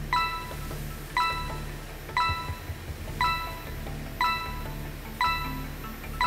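Game-show countdown timer sound effect: a short, bright electronic ping repeating once a second, six times, as the answer clock counts down.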